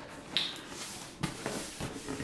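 Cardboard box being handled and turned around by hand on a desk: a short scrape about a second in, followed by a faint rubbing hiss.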